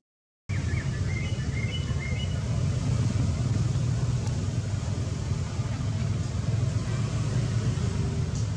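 Silent for about half a second, then a steady low rumble of background noise, with a few faint high chirps in the first couple of seconds.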